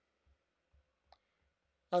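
Near silence: room tone, broken by a single short, faint click about a second in.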